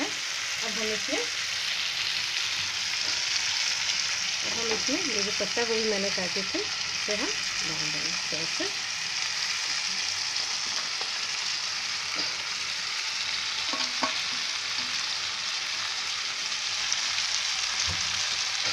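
Spiced potatoes, peas and tomato sizzling steadily in hot oil in a frying pan, stirred with a wooden spatula, with shredded cabbage tipped in around the middle.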